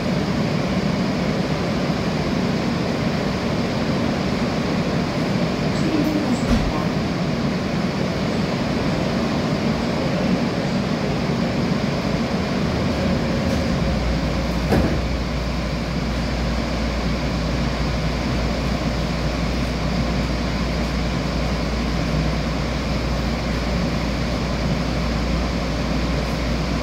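Steady interior noise of a Korail Line 3 electric multiple unit (set 395, IGBT-inverter stock), heard inside the passenger car. There is a faint knock about six seconds in and another near the middle, and a steady low hum sets in about halfway through.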